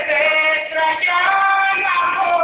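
A high singing voice carrying a melody, holding notes and moving between pitches, over musical accompaniment.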